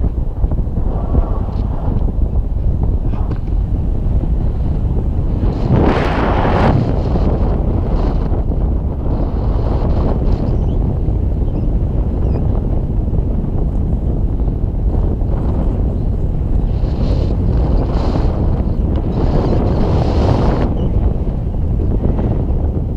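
Wind buffeting an action camera's microphone in flight on a tandem paraglider: a steady low rumble with louder gusts about six seconds in and again near the end.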